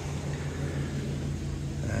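Car engine idling: a steady low hum.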